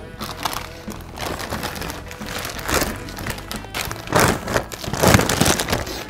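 Lay's potato chip bags crinkling and rustling in irregular bursts as faces are pushed into them, loudest about four to five and a half seconds in, over light background music.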